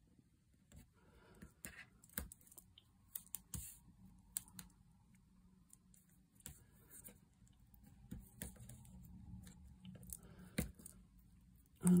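Double-sided tape being drawn off its roll and pressed along the back of a strip of paper: faint, scattered clicks and crackles of tape and paper.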